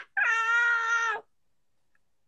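A single high-pitched, drawn-out cry lasting about a second, held almost level in pitch after a brief drop at its start, then cutting off.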